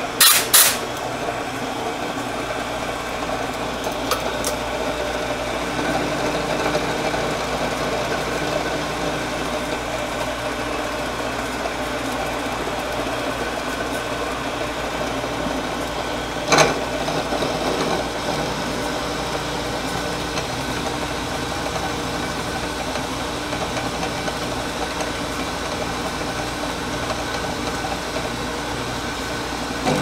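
Vertical milling machine running steadily with its end mill cutting a pocket in a steel block. Two short blasts of a compressed-air blow gun clearing chips break in, one right at the start and one about 16 seconds in.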